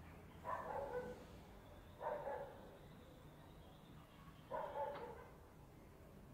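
A dog barking three times, about two seconds apart, each bark short and somewhat distant over quiet room tone.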